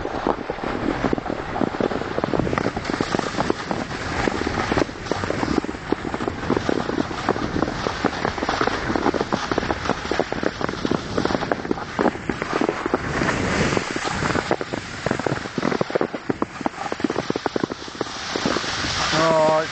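Steady crunching and scraping of snow as someone moves over a shallow snow-covered track, with wind rushing on the microphone.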